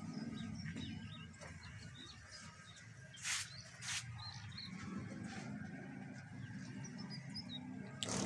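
Small birds chirping over a low steady hum, with two brief scraping noises just past three and four seconds in.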